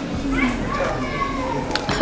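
Children's voices playing and calling, high-pitched and gliding, with a sharp click shortly before the end.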